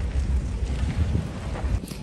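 Wind buffeting a phone's microphone in the open bed of a moving pickup truck: a steady low rumble of wind and travel noise with no voices.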